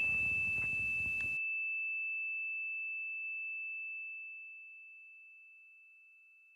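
A single high, pure chime-like tone, struck once and ringing on steadily as it slowly fades away over about five seconds. Faint room hiss under it cuts off about a second and a half in.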